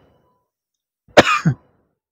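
Silence, then about a second in a single short, sharp vocal sound from a person, lasting about half a second and cut off cleanly.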